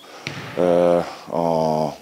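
Speech only: a man's voice drawing out two long hesitation sounds of level pitch, each about half a second, the second one an 'a'.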